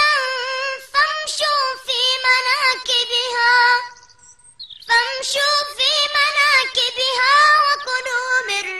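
A young boy's high voice chanting Quran recitation in melodic tajweed style. There are two long, ornamented phrases with a pause of about a second around four seconds in.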